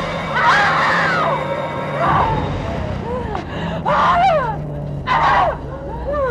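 A woman screaming: a run of about five shrill cries, each falling in pitch, the loudest about a second in and again about four seconds in.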